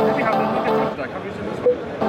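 Music playing through a JBL PowerUp (Nokia MD-100W) wireless stereo speaker, dropping out about halfway through, with a short beep near the end.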